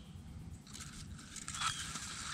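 Grass and weed stems brushing and rustling against a phone as it is pushed in close to the ground, starting a little under a second in, over low handling rumble.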